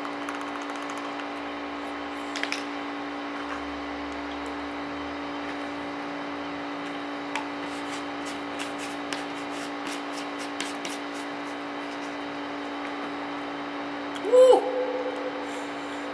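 A steady mechanical hum throughout, with a few light clicks in the middle as a plastic supplement tub and its lid are handled. Near the end there is one short, loud vocal sound from the man, about a second long, as he takes the dry pre-workout powder down.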